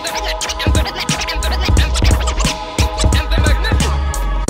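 Vinyl record scratched by hand on a turntable: quick back-and-forth pitch sweeps chopped on and off by the mixer's crossfader, over a hip-hop beat with a steady bass.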